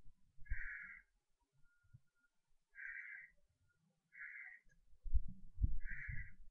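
An animal calling four times: short, rasping calls of about half a second each, one to two seconds apart. Low knocks and rumbling come in under them, loudest near the end.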